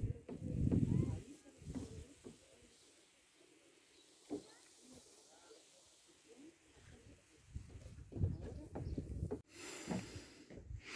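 Wind gusting on the microphone: irregular low buffeting, strongest in the first second and again in the last couple of seconds, with a quiet lull in the middle. A brief hiss comes just before the end.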